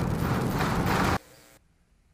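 Starship's Super Heavy booster firing its 33 Raptor engines during ascent, a dense crackling rumble. It cuts off suddenly a little over a second in, leaving near silence.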